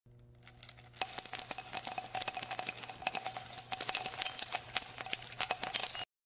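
Intro jingle of ringing bells: a dense run of quick bell strikes over steady ringing tones, coming in about a second in and cutting off suddenly.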